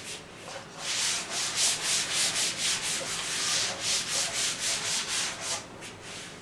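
A duster wiping a chalkboard clean in quick back-and-forth strokes, about four a second, starting about a second in and stopping near the end.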